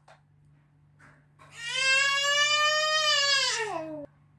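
A single long crying wail starts about one and a half seconds in, holds a steady high pitch, then slides down in pitch as it ends.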